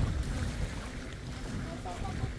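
Wind buffeting the microphone: an uneven low rumble, with faint voices near the end.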